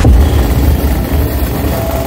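Motorcycle engines running, mixed with background music that comes through more clearly near the end.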